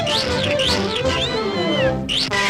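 A cartoon kitten's shrill cries over orchestral cartoon music: three short rising-and-falling squeals, then a longer cry that falls away.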